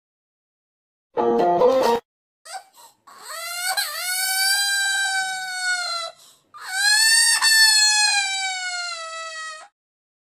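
Cartoon crying sound effect: after a short chord-like burst, two long, high-pitched wailing cries of about three seconds each, the second starting about six and a half seconds in.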